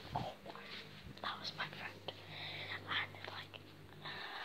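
A person whispering in short breathy strokes, over a steady low hum that starts just after the beginning and stops near the end.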